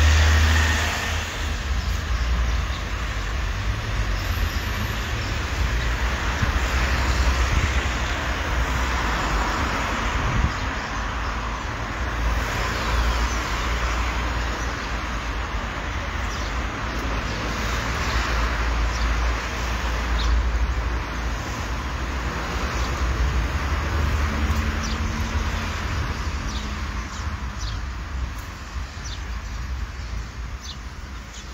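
City street traffic noise: cars passing by in swells every few seconds over a steady low rumble, easing off near the end.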